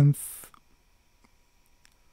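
A man's voice ending a word with a hissed 's' sound, then a pause of faint room tone with a faint tick near the end.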